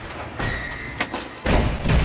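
Logo-intro sound design: a few heavy booming impact hits over a music bed, the deepest and loudest about one and a half seconds in.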